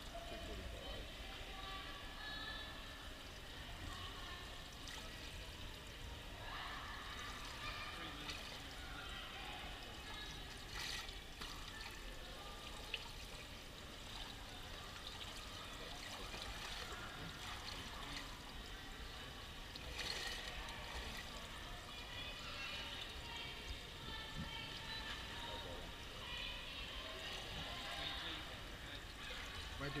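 Water trickling steadily into the slotted overflow gutter at the pool's edge, with faint talk in the background.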